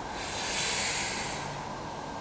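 A person's long, forceful breath through the mouth during a back-extension rep: a hissing rush of air that swells and fades over about a second and a half.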